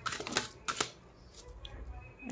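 A tarot deck being shuffled and flicked through by hand, with a quick run of card snaps and clicks in the first second, then softer card handling.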